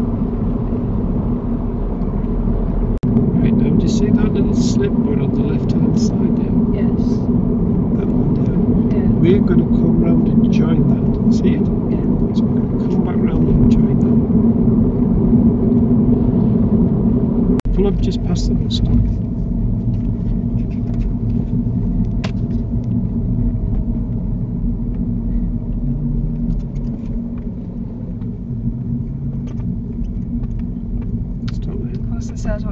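Steady engine and road rumble inside a car cabin while driving at speed, with scattered faint ticks over it and one sharp click a little past halfway; the rumble eases a little in the later part.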